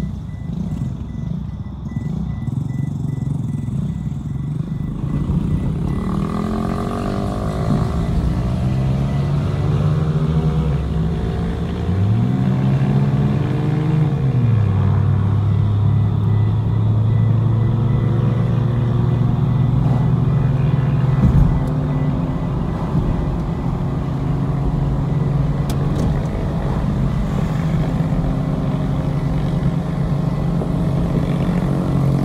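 A vehicle engine running steadily, with a low hum. About twelve seconds in its pitch rises and falls once, then settles lower and holds.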